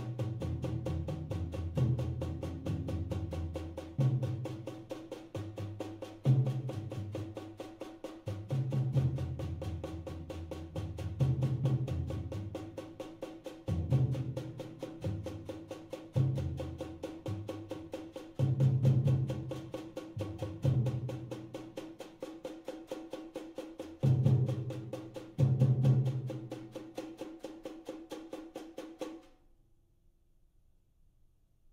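Percussion ensemble of drums playing a rapid, even stream of strokes over a steady ringing tone, with heavier low drum strokes every couple of seconds. The playing stops abruptly about a second before the end.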